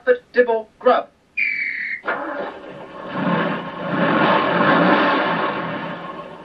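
Soundtrack of an old children's TV puppet programme heard through a television: a man's voice briefly, a short whistle-like tone, then a steady rushing noise that swells and fades over the last few seconds.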